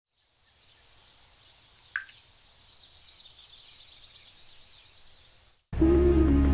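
Faint high chirping with one short, sharp sound about two seconds in, then background music starts abruptly just before the end.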